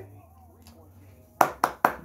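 Hand claps: a person claps three times in quick succession, about a quarter second apart, near the end after a quiet stretch.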